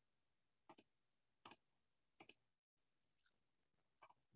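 Near silence with three faint clicks, evenly spaced about three-quarters of a second apart, in the first half.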